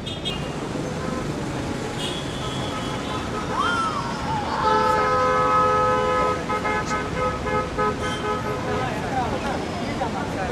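Street traffic noise with a vehicle horn of several tones. The horn is held for about two seconds from just under five seconds in, then sounds in short repeated toots until about nine seconds.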